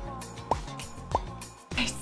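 Background music with short rising 'bloop' notes, three of them a little over half a second apart, over a soft steady bass line.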